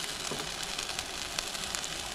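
Consommé-dipped tortilla frying in hot avocado oil in a skillet: a steady sizzle with a few sharp pops of spattering oil.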